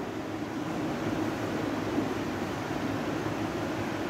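Steady background room noise: a continuous even hiss with a low hum underneath and no distinct events.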